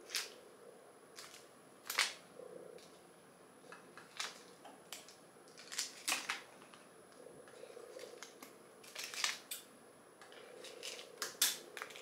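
Scattered light clicks and snips of small-scale handling: scissors and the plastic packets of a Popin' Cookin' candy kit, a dozen or so separate ticks spread out with quiet gaps between.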